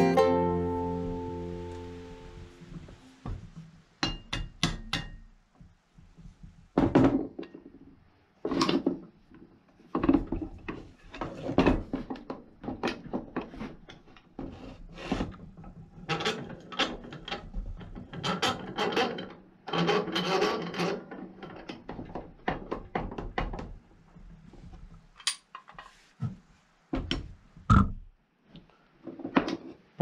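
Guitar music fades out over the first few seconds. After that comes a long run of irregular knocks and clanks as a cast-iron Record No. 100 bench vise is handled and shifted about on a plywood board, some knocks with a brief metallic ring.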